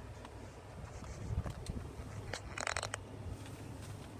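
Low steady hum inside a pickup truck's cabin, with light rustles and clicks from a hand-held phone camera being moved, and a short hiss a little past halfway.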